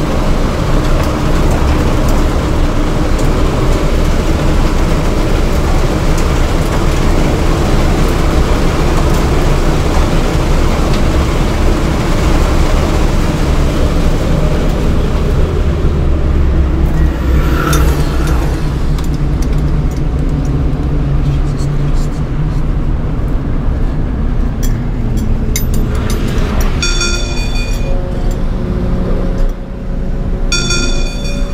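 Inside the cabin of a 2007 VW GTI on track: its turbocharged four-cylinder engine and tyre and road noise at speed, easing just past halfway as the car slows, with a brief rise in pitch there. A repeated electronic beeping comes in near the end.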